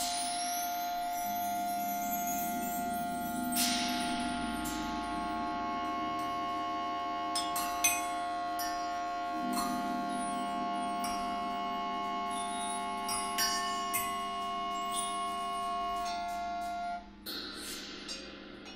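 Free-improvised music: clarinet and other reeds hold long steady tones over a low drone, while struck metal, chimes and mallet percussion ring out in scattered strikes. Near the end the held tones stop, leaving a few ringing strikes.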